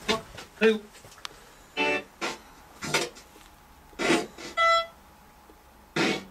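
Spirit box sweeping through radio stations: short, choppy snatches of broken voice and music, with one brief held musical note near the end.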